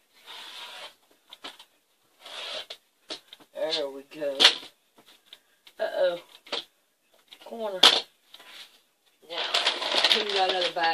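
Two short swishes of a rotary cutter slicing through polyester fiber fill batting on a cutting mat, followed by several short, indistinct murmurs of a woman's voice.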